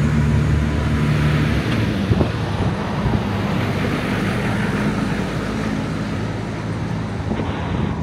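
Trailer-mounted Hipower generator's engine running, a steady low drone.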